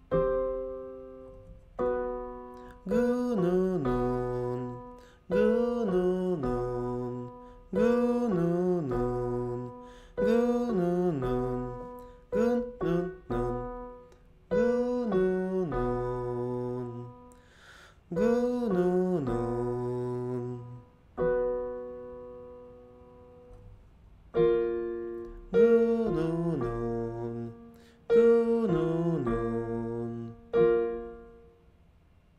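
Piano playing the accompaniment for a 'gun-nun' vocal warm-up on a descending 8-5-1 pattern, a short phrase ending in a held chord about every two seconds. A low voice sings the pitch slides of the exercise along with it.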